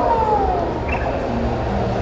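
Busy exhibition-hall ambience: a steady low rumble of crowd and hall noise, with a brief tone falling in pitch near the start.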